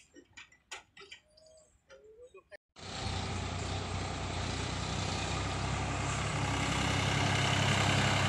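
Sonalika 750 DI tractor's diesel engine running steadily as it pulls a trolley loaded with sand, starting abruptly almost three seconds in and growing slowly louder as it comes closer. Before it, only faint scattered clicks.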